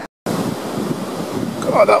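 Wind buffeting the microphone over the sound of surf, starting just after a brief dropout at the very beginning.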